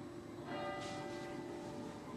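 A church bell tolling: one stroke about half a second in, its ring held on with many overtones.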